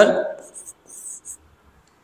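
Chalk writing on a blackboard: several short scratching strokes over the first second and a half, as a word is written, following the end of a spoken word.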